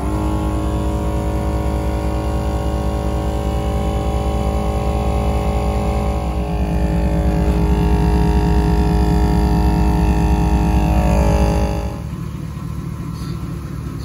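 GSPSCN dual-cylinder 12 V portable air compressor running steadily. It gets louder and shifts in pitch about halfway through, then winds down and stops about twelve seconds in.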